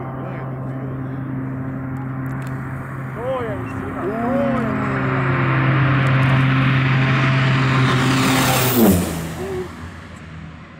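Short SC-7 Skyvan's twin Garrett TPE331 turboprops on a low pass: a steady propeller drone grows louder as the aircraft approaches. At close range it rises into a loud rushing peak, then drops sharply in pitch as it passes, just before the end, and fades as it flies away.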